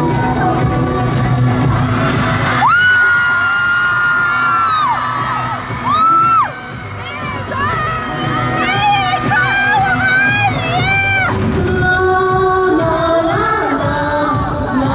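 Live pop concert music played over a large hall's sound system. The band's low end falls away for several seconds in the middle while high, long-held vocal cries sound, some wavering, before the full band comes back in near the end.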